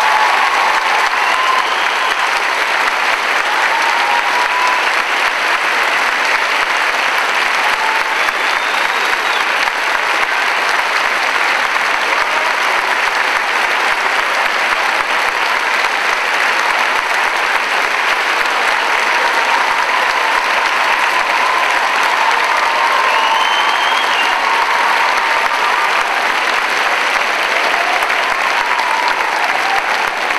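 Large audience applauding steadily and loudly without a break, with a few faint voices calling out above it.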